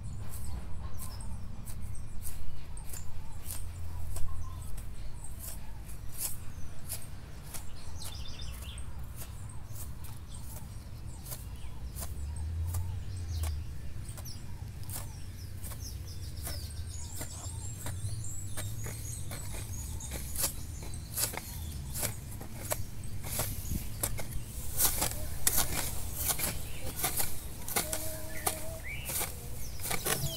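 Hoe blades chopping into weedy soil: a run of sharp strikes, one or two a second, coming thicker and louder in the last third. Birds chirp, and a hen clucks near the end.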